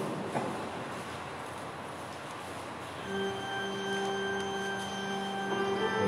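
Quiet, hushed room tone in a large church for about three seconds, then a single steady note from an instrument sounds and is held: the start of the offertory music.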